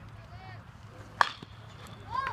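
A single sharp crack of a pitched ball's impact about a second in, over faint distant voices and a low outdoor hum.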